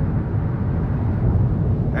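Steady in-cabin running noise of a Hyundai Venue's 1.6-litre four-cylinder engine and tyres, a low rumble as the car picks up speed in sport mode, which holds the engine at higher revs.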